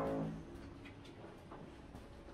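Steady, pitched machine drone from renovation work in the block of flats. It fades within the first half second to a faint, continuous hum.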